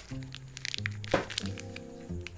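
Background music with held notes over a low bass, with a few sharp crackles of paper wrapping being handled and unwrapped. The loudest crackle comes about a second in.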